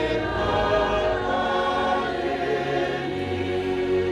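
A choir singing a hymn in held, sustained chords.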